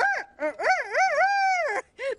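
A high-pitched voice imitating a rooster's crow, a "cock-a-doodle-doo" wake-up call. A short opening note is followed by a wavering call that ends in one long held note.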